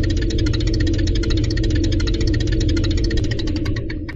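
A steady, loud machine-like drone with a fast, even ticking over a low rumble, serving as an intro soundtrack to an animated logo. It eases off slightly near the end.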